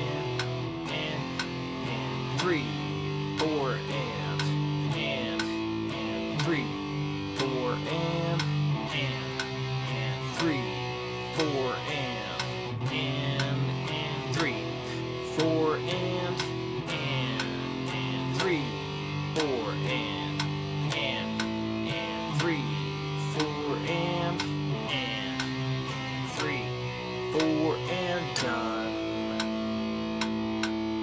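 Electric guitar played through an amp, picking a rhythm exercise of power chords (F5, E5, G5, A5, C5, B5) in short repeated strokes that step from chord to chord.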